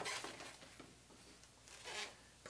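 A light click at the start, then faint handling and rubbing of latex twisting balloons.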